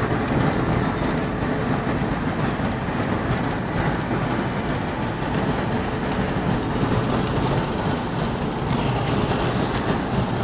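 Steady road and engine noise heard inside the cabin of a moving passenger van.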